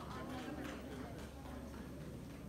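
Faint talking voices with a few light, scattered hand claps.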